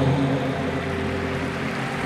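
Live band backing music in a stadium during a gap in the vocals: a held low bass note under a sustained chord, blurred by the stadium's echo and crowd noise.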